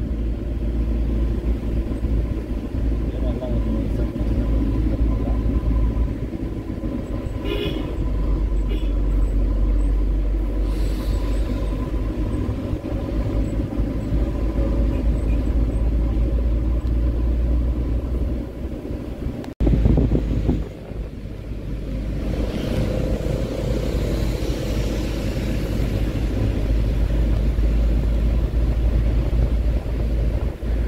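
Minibus engine and road noise heard from inside the passenger cabin: a steady, deep rumble while driving, with a brief higher-pitched sound about a third of the way in.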